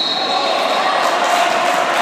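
Echoing sports-hall din during a basketball game: players and spectators calling out, with a basketball bouncing on the court floor.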